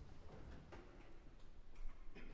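Quiet concert-hall room tone in the pause between symphony movements: scattered small clicks and rustles as the orchestra and audience settle, with a louder click near the end.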